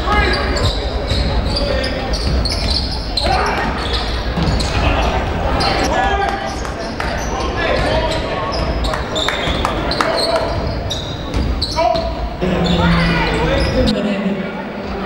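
Live sound of a basketball game: a basketball bouncing on the court and repeated sharp knocks of play, with voices of players and spectators, echoing in a large sports hall.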